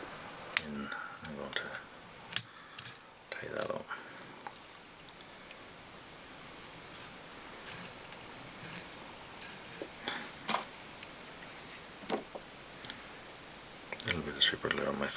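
Intermittent small clicks and ticks of hand work at a fly-tying vise, with tools and thread being handled, over quiet room tone; a few of the clicks are sharper than the rest.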